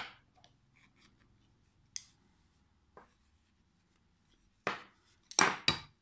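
Knitting needles clicking and scraping against each other while stitches are purled two together in thick yarn: scattered single clicks, then three louder ones near the end.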